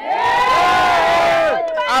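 A crowd of protesters shouting together in one long, drawn-out cry of many voices, rising and then falling away about a second and a half in.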